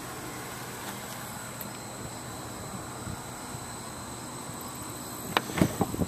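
Quiet outdoor background with a steady faint high-pitched whine over a low hiss, and a sharp click about five seconds in.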